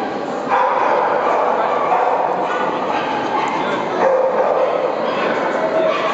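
Dogs barking and yipping amid people talking, a steady mix that gets louder about half a second in.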